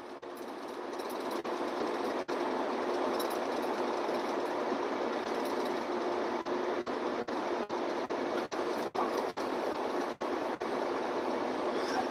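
Steady cab noise of a semi-truck driving at highway speed, road and engine drone with a faint steady hum. It swells in over the first couple of seconds and is broken by many brief dropouts.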